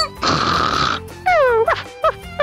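One snore, less than a second long, followed by a few short, squeaky, falling voice-like sounds, over light background music.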